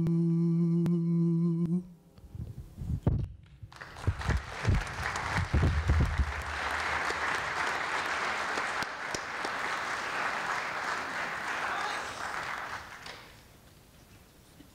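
A male solo voice with a choir holds the last sung note of a song, which stops about two seconds in. After a few low thumps the audience applauds for about nine seconds, and the applause fades out near the end.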